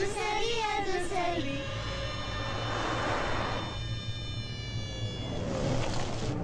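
Film soundtrack: a short sung line, then held music notes under a rushing whoosh that swells and fades about halfway through, with another whoosh near the end.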